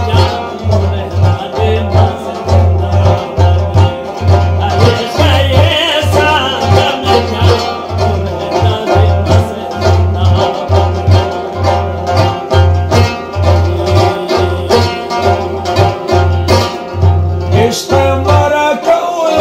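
A male voice singing a devotional ginan, accompanied by a frame drum (daf) struck in a steady repeating beat and a plucked string instrument.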